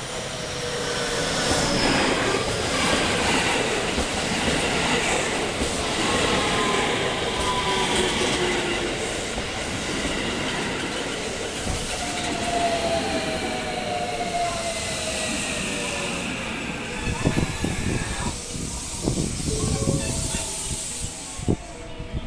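JR West 223 series 2000 electric multiple unit pulling into the platform: a motor whine that falls slowly in pitch as the train slows, over steady wheel and rail noise. Near the end a run of sharp clicks as the wheels cross rail joints.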